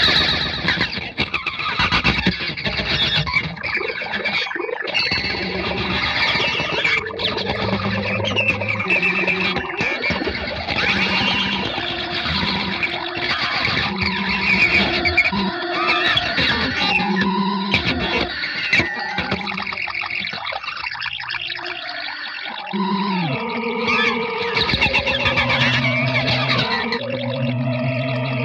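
Electric guitar, a 1959 Fender Jazzmaster, played through a Boss DD-3 digital delay set for fast repeats, a busy stream of notes with the echoes piling on top of each other. About three quarters of the way through it thins out briefly, then lower held notes come in.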